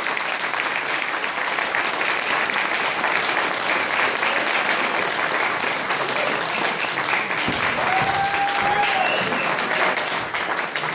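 An audience applauding steadily after a talk. A short held tone sounds briefly over the clapping near the end.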